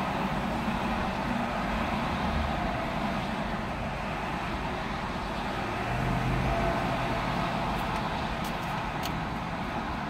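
Steady vehicle and traffic noise heard from inside a parked car, with a low engine hum that swells about six seconds in, as of a vehicle moving close by. A few faint clicks come near the end.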